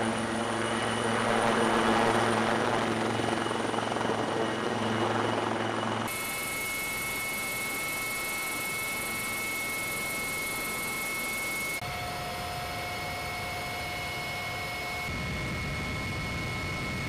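AW159 Wildcat helicopter hovering low, its rotor and turbines running with a steady pitched drone. About six seconds in the sound cuts to the inside of a helicopter cabin: a steady high turbine whine over a rush of noise.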